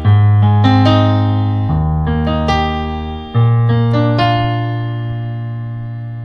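Yamaha PSR-SX900 arranger keyboard on a piano voice, playing the last three chords of a one-four-one-five progression: a new chord with a bass note is struck about every second and a half, with higher notes added on top. The last chord, the five, is held and slowly fades.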